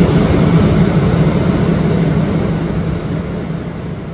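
Spray-paint booth noise: a loud, steady rumble of air with hiss above it, from the booth's airflow and the spray gun in use. It fades out gradually near the end.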